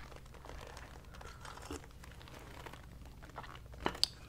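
Faint rustling and handling sounds as a woman sips from a china teacup, with a sharp click near the end.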